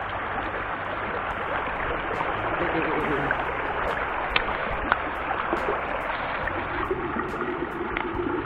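Steady rush of a shallow mountain stream running over rocks and stones.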